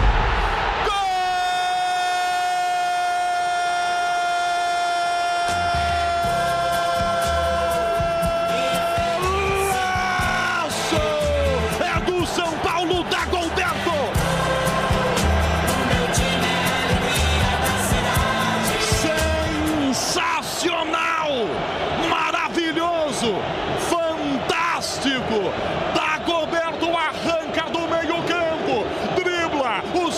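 A football commentator's drawn-out goal cry, one long held note of about eight seconds that slides down at the end, over background music with a thumping beat. Excited voices over the music follow.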